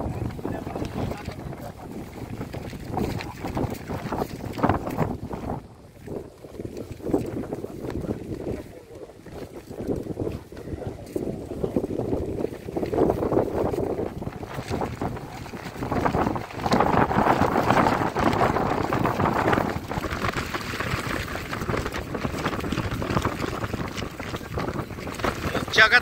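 Strong gusty wind buffeting the microphone, with men's voices heard over it.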